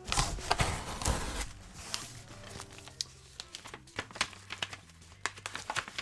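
Paper envelope being torn open and handled, rustling and crinkling loudest in the first second and a half, then faint scattered crinkles and clicks as the letter is drawn out.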